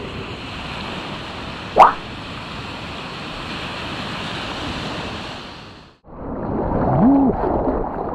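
Small surf washing onto a sand beach, heard as a steady hiss, with one short, loud rising squeak about two seconds in. About six seconds in the sound cuts to water sloshing and splashing right around a camera on a surfboard's nose as the surfer paddles out.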